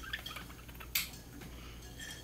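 Pet budgerigar chattering in short, faint chirps, with one sharper chirp about a second in.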